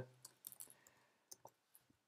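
Faint computer keyboard keystrokes: a few separate clicks in the first second, then a couple more about a second and a half in.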